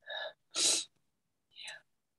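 A person's short breathy vocal sounds: three brief bursts, the middle and loudest a breathy "yeah".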